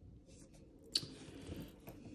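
Gold Cuban link chain and bracelet handled in the hands: faint clicking and rustling of the metal links, with one sharper click about a second in.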